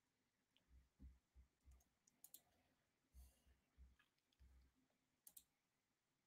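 Near silence: room tone with a handful of faint clicks and soft low thumps scattered through it.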